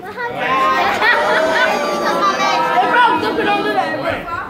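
Several people talking over one another in indistinct chatter.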